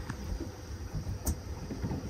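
Steady low rumble of the fishing boat at sea, with a single light click about a second in.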